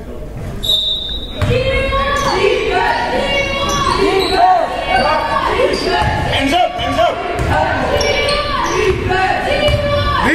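A referee's whistle blows once, briefly, about half a second in. Then basketball shoes squeak again and again on the hardwood gym floor as the ball is dribbled and play runs on.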